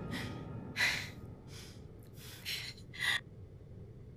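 A person's sharp, heavy breaths, about five in a row, each short and spaced less than a second apart.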